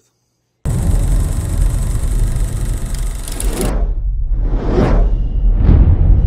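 Intro sound design: after a moment of silence a loud low rumble with a hiss over it starts suddenly, the hiss cuts out a little before four seconds in, and two whooshes sweep through near the end.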